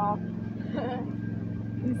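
A steady, low engine hum, like a motor idling, with a faint voice briefly about halfway through.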